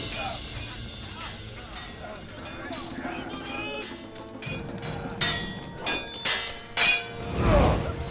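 Dramatic film score, with a few sharp hits in the second half and a loud cry near the end as a sword fight breaks out.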